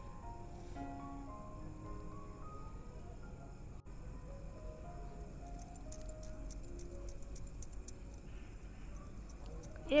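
Quiet background music with a simple melody of short held notes. From about halfway through, light clinking of glass bangles on the wrists as the hands shape a laddu.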